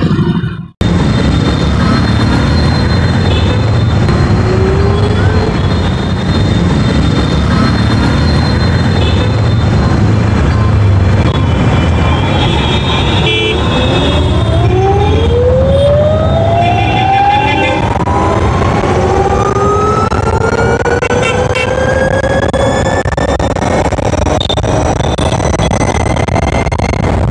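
Ather 450 electric scooter's motor whine rising steadily in pitch for about ten seconds as the scooter pulls away and accelerates to around 59 km/h, over steady wind and road noise on the microphone.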